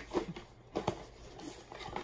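A cardboard shoe box being handled and its lid opened: a few short knocks and scrapes of cardboard.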